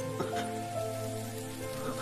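Soft background score of sustained, held notes, with a faint hiss beneath and a light click shortly after the start.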